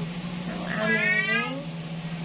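A single drawn-out meow-like call, rising then falling in pitch, about a second long, over a steady low hum.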